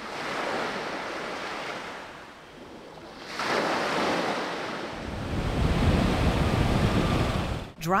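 Ocean surf washing onto a sandy beach, rising and falling as small waves break. Wind rumbles on the microphone through the second half.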